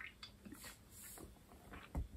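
Faint sips and swallows as a man drinks beer from a can.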